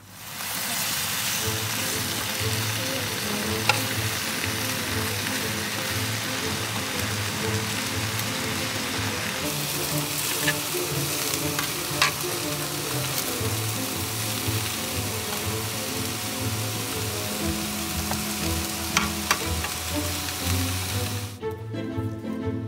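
Chicken breast and vegetables stir-frying in a skillet over a camp gas burner: a steady loud sizzle, with a few sharp clicks of the cooking utensil against the pan. The sizzle cuts off suddenly just before the end.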